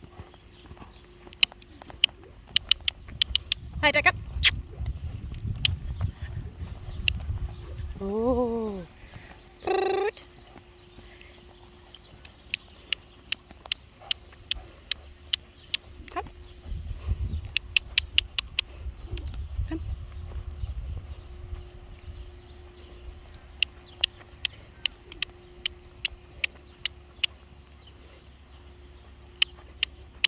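A horse moving loose around a sand arena: quick runs of sharp clicks, with low thudding that swells and fades twice as it passes close. About eight seconds in there is a short vocal sound that rises and falls in pitch.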